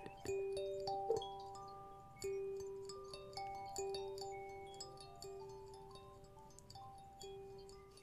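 Two five-note B5 pocket kalimbas plucked softly together: a slow, wandering run of ringing metal-tine notes that overlap and fade, with the lowest note coming back every second and a half or so.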